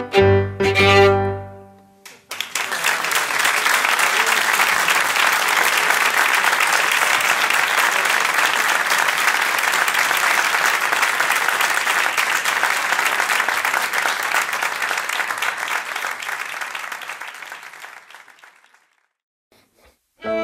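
A digital piano sounds the closing chords of a piece, then an audience applauds steadily for about sixteen seconds, the clapping dying away near the end.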